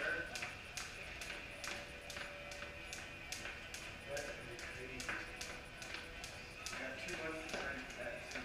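Skipping rope slapping a concrete floor in a steady rhythm, about two and a half slaps a second, with music and voices underneath.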